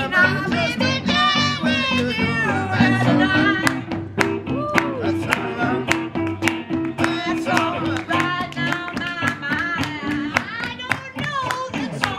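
Improvised blues jam on plucked guitars, a cigar box guitar and an electric guitar: a repeating low riff runs under sliding, bending lead notes.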